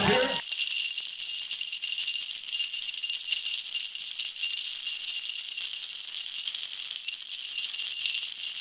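Live band music cuts off within the first half-second, leaving jingle bells ringing steadily as a bright, high shimmer with no other instruments.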